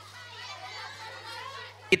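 Many children in an audience calling out answers at once, a faint jumble of young voices, over a steady low hum.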